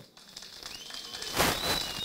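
A short pause in a man's speech over a microphone: low background noise with a faint, thin, high whistle, and a brief rush of noise like a breath about one and a half seconds in.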